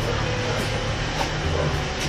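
Steady background noise, a low hum with an even hiss, holding level throughout with no distinct events.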